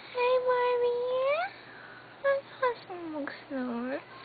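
A dog vocalizing: one long whine that rises in pitch at its end, then two short high notes and a few lower, swooping howl-like moans.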